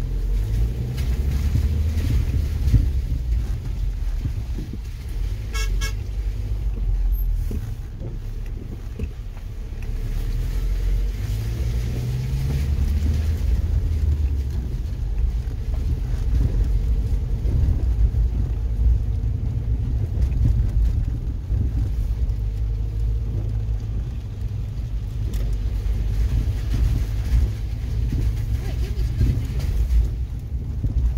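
Car engine and tyre rumble heard inside the cabin while driving up a rough, wet dirt road, rising and falling with the road. A short horn toot sounds about six seconds in.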